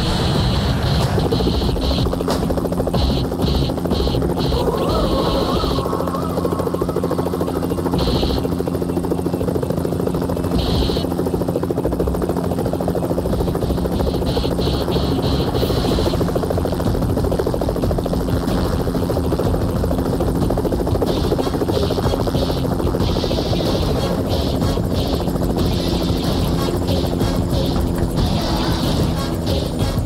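Small helicopter flying in, its engine and rotor a steady drone.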